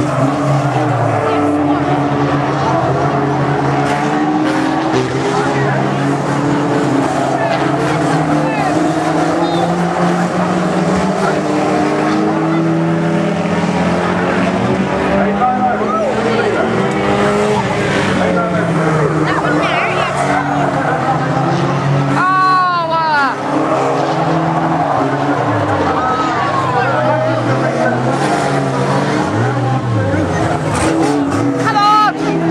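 Several banger racing cars' engines revving and changing pitch together as they race round a short oval track. A brief tyre squeal comes about three-quarters of the way through.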